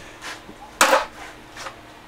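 A single short, sharp clack about a second in, with a few faint knocks around it: handling noise from a handheld camera being swung about.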